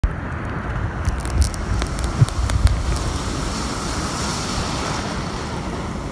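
Wind buffeting the phone's microphone over the steady wash of breaking surf, with a few sharp crackles in the first few seconds.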